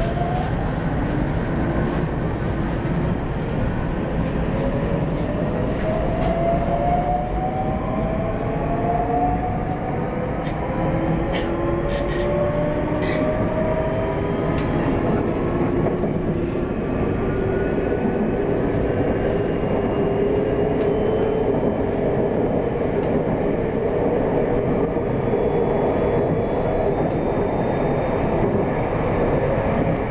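JR West 521 series electric train accelerating away from a station: its traction inverter and motors whine in several tones that rise in pitch as it gathers speed and then level off, over steady wheel-on-rail running noise. A few sharp clicks come near the middle.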